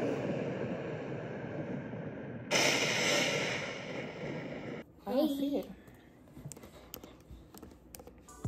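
Thunderstorm sound from a nature documentary played through a laptop's speakers: a low rumble of thunder, then about two and a half seconds in a louder hissing burst of storm noise that cuts off suddenly near the middle. A brief gliding voice sound follows, then faint clicks.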